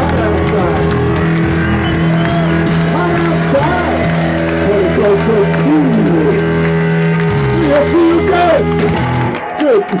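A garage rock band playing live, its guitars and bass holding a long sustained chord with the singer's voice wavering over it. The band cuts off about nine seconds in as the song ends.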